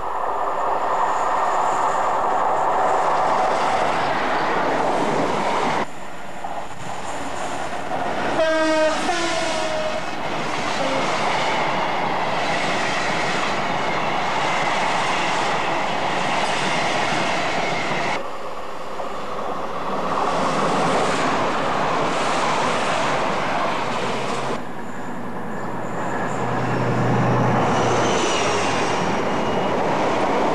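Trains running through at speed, with a steady rush of wheel-on-rail and air noise. A train horn sounds about 9 s in, its pitch dropping slightly as the train passes. Near the end a low engine hum comes in as a diesel-hauled freight approaches. The noise dips abruptly at three points, around 6, 18 and 25 s.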